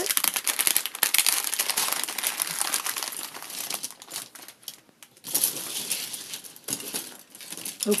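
Clear plastic packaging crinkling as it is pulled open and the contents slid out, then, after a brief quieter spell about halfway, paintbrush handles and plastic palette knives clattering together as they are spread out by hand.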